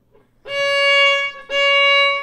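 Violin playing two bowed notes of the same pitch, each about a second long with a bow change between them: C sharp stopped with the second finger on the A string, a step in a slow A major scale exercise.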